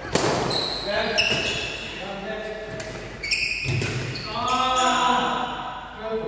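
Badminton rally in a reverberant sports hall: a sharp racket strike on the shuttlecock just after the start, then short squeaks of trainers on the wooden court floor. A player's voice calls out near the end.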